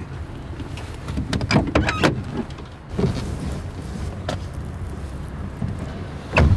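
Low, steady hum inside a car cabin, with a few scattered clicks and knocks.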